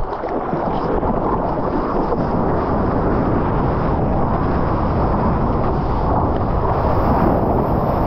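Steady rush of water and wind over a surfer's action camera as he rides a breaking wave, the water streaming past the board and his trailing hand.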